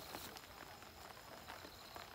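Faint, scattered patter of water drops, from rain and water dripping off a wet fishing net into the pond.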